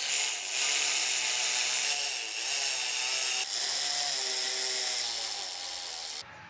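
Milwaukee cordless electric ratchet with a 10 mm deep socket running, spinning nuts down the long threads of U-bolts, in long runs broken by a few brief pauses.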